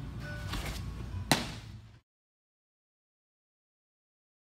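A pitched baseball smacking into a catcher's mitt: one sharp pop about a second and a half in. The sound then cuts off to dead silence about halfway through.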